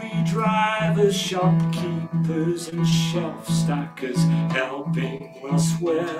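Acoustic guitar strummed in a steady rhythm, about two chords a second, with a man singing a slow worship song over it.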